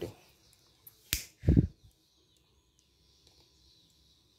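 A single sharp click, then a short dull knock about half a second later: handling noise.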